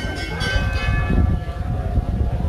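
A metal bell or hand cymbal struck once at the start, its several ringing tones fading out over about a second, over a steady low rumble.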